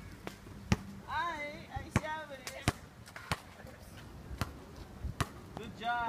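Basketball bouncing on a hard outdoor court: a string of sharp thuds at uneven intervals, roughly one every half second to a second.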